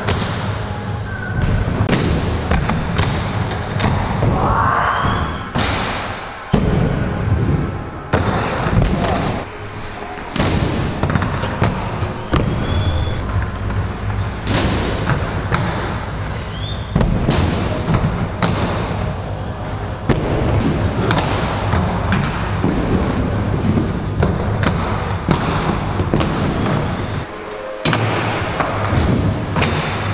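Inline skates rolling, sliding along the coping and rails, and landing with repeated thuds on a wooden mini ramp, over background music.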